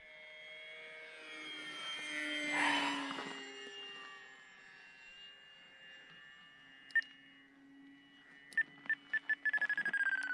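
Electric motor and propeller of a small RC warbird whining as it flies by, loudest under three seconds in with its pitch sliding down as it passes, then fading to a faint drone. Near the end, a quick run of short beeps from the radio transmitter as the elevator trim is clicked.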